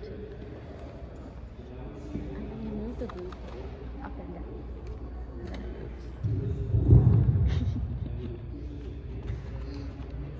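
Indistinct chatter of several people talking in the background, with a louder low rumble rising about six seconds in and fading over the next two seconds.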